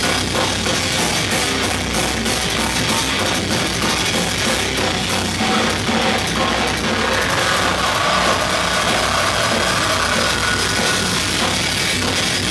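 Metal band playing live: distorted electric guitars, bass guitar and a drum kit, loud and continuous with dense drumming.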